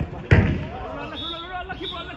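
A single loud thud of a football being struck, about a third of a second in, followed by players shouting and talking on the pitch.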